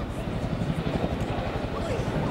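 Indistinct, low voices of a group talking among themselves, over a steady rumble of wind buffeting the microphone.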